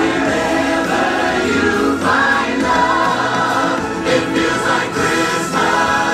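Christmas stage-show music: a choir singing long held notes over the show's backing track, with a few sharp accents near the end.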